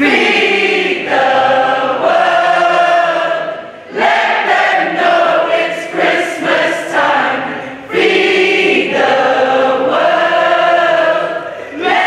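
A mixed choir of men and women singing together in long held phrases, with short breaths between phrases about four and eight seconds in.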